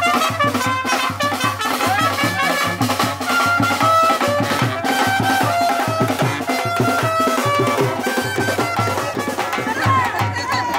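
Music with brass instruments playing held melodic notes over a steady drum beat.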